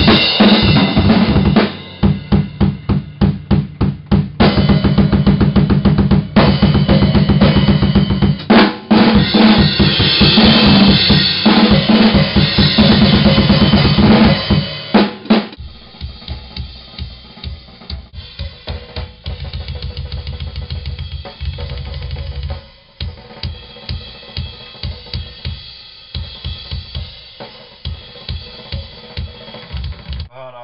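Death-metal drum kit played hard: rapid kick-drum strokes with snare and crashing cymbals. About halfway through, the drumming becomes quieter and duller, as heard from the studio control room.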